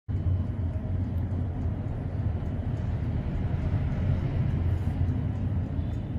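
Steady low rumble of background noise, a continuous hum with faint ticks above it.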